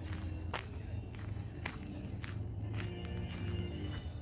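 Footsteps on a paved path at a steady walking pace, about two steps a second, with faint music in the background.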